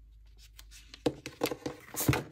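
Paper handling on a desk: planner pages and sticker tabs rustling and being tapped down by hand. It is faint at first, then there are several short, sharp rustles from about a second in, the loudest near the end.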